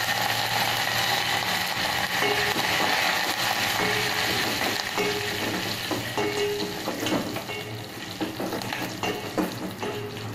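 Hot oil tempering sizzling in a small steel pot as fresh curry leaves fry with mustard seeds, garlic and red chillies. The sizzle is loudest at the start and eases toward the end, and from about halfway a steel ladle stirring in the pot adds small scrapes and taps.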